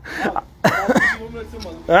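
A man's voice: two short vocal utterances with rising and falling pitch, a brief break in his talk.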